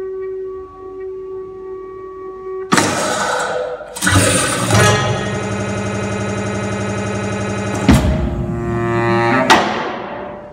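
Experimental live music for baritone saxophone, percussion and electronics. A held tone fades, two sudden loud hits come a second apart, then a long steady buzzing tone with many overtones lasts about three seconds before more sharp attacks break in.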